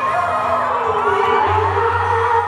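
Concert crowd cheering and screaming over a live pop song, with a steady bass note coming in about one and a half seconds in.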